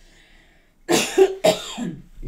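A woman coughing twice, two short harsh coughs about half a second apart, starting about a second in.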